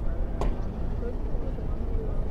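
Steady low wind rumble on an open-air microphone, with one sharp click about half a second in.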